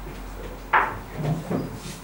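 A sharp knock about three quarters of a second in, followed by a couple of duller thuds.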